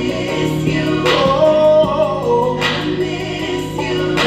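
A man singing a slow gospel song into a microphone, with long held notes over a steady sustained accompaniment.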